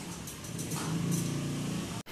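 Street traffic, with a vehicle engine's hum growing louder about halfway through.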